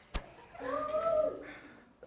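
A sharp click, then a drawn-out, meow-like call lasting about a second that rises and falls in pitch.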